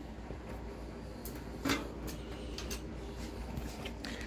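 Faint knocks and rattles from handling a mountain bike's rear wheel just taken out of the frame, with one slightly louder knock about a second and a half in, over a low steady hum.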